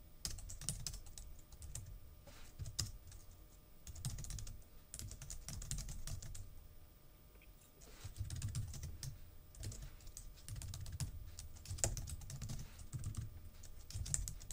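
Typing on a computer keyboard: irregular runs of keystroke clicks, with a pause of about a second and a half halfway through.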